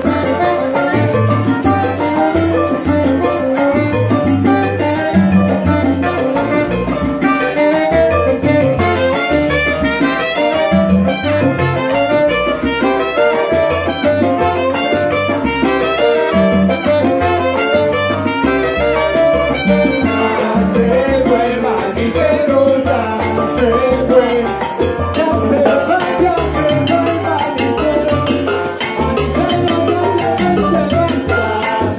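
Live salsa band playing: trumpet and tenor saxophone over upright bass and drums in a steady Latin rhythm.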